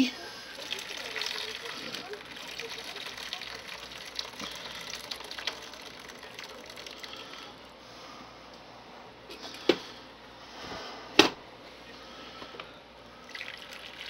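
Crock-pot chicken and broth being poured through a strainer into a bowl: liquid running and dripping for several seconds, tapering off. Two sharp knocks of kitchenware near the end.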